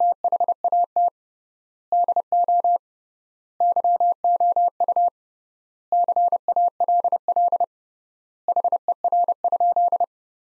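Morse code sent as a pure electronic tone at 30 words per minute with triple word spacing: quick dots and dashes at one steady pitch, grouped into five words with pauses of nearly a second between them. It is the repeat in Morse of the sentence just spoken, "And what do you call her?"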